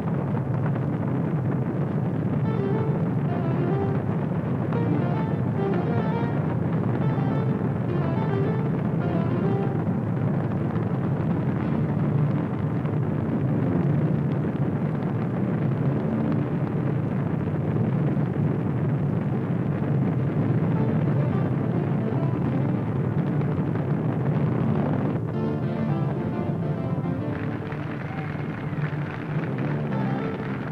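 Music playing over the steady rumble of Space Shuttle Columbia lifting off, its main engines and solid rocket boosters firing.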